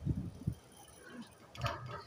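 Handling noise from a handheld microphone being fitted into its stand clip: a cluster of dull knocks and rubs in the first half second and another about a second and a half in.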